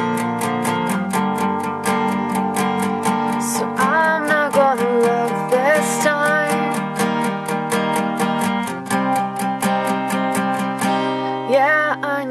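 Instrumental break in a song: an acoustic guitar strums a steady rhythm of about four strokes a second over held chords, and a wavering lead melody comes in briefly about four and six seconds in.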